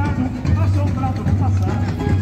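Samba-school parade music: a singer's voice over a repeating low bass line.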